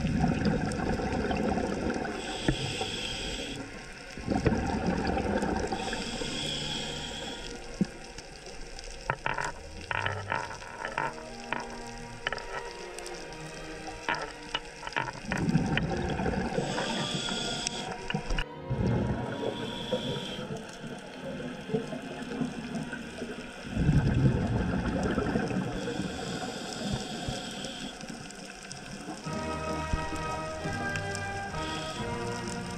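Open-circuit scuba regulator breathing underwater: spells of hissing inhalation alternate with louder rushes of exhaled bubbles, a few seconds apart. A run of crackling clicks comes in the middle.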